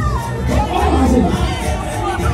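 Loud party music with a steady beat, over a crowd of guests' voices shouting and cheering.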